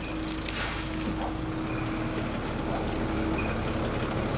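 A steady mechanical hum: one constant low tone held over a low rumble, with a few faint ticks.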